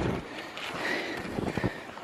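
Outdoor movement noise on a handheld camera's microphone: a steady hiss with a few faint ticks and knocks about three quarters of the way in.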